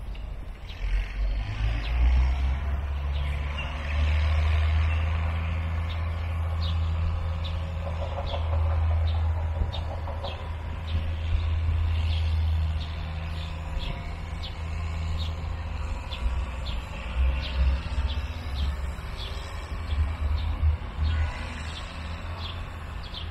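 Outdoor background: a steady low rumble that swells and dips, with short high chirps repeating about once a second.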